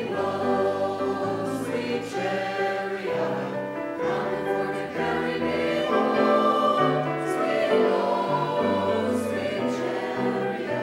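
Mixed-voice church choir singing an anthem, men's and women's voices together on held, sustained notes.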